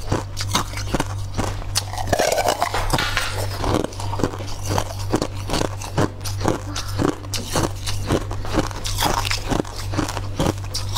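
Close-miked chewing of crunchy frozen food: rapid, crisp crunches, several a second, over a steady low hum.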